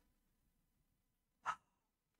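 Near silence, broken about one and a half seconds in by one short, sharp breath from a man close to the microphone.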